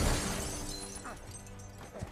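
Breaking car window glass shattering and tinkling down in the fading tail of a crash into a police car, dying away over a low, sustained film score.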